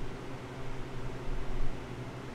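Room tone: a steady low hum with an even hiss, no speech.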